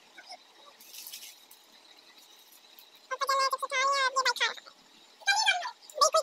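A child's high-pitched voice in drawn-out, wavering calls about three seconds in and once more, briefly, near the end. Before that, about a second in, there is a short rustle.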